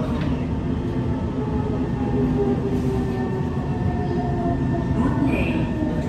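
SMRT C151 metro train running, with the rumble of wheels on track under the whine of its Mitsubishi GTO chopper traction motors: several steady tones that come and go at different pitches.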